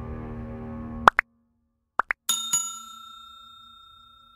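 Background music fading and stopping about a second in, then subscribe-button animation sound effects: two quick pairs of pops, then a bell-like ding that rings on and slowly fades.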